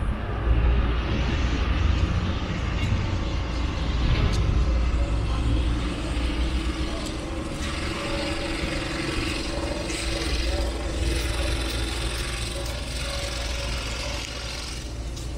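City street traffic: a large vehicle passing with a low engine rumble, loudest over the first half and then easing off, with a faint steady engine tone under it.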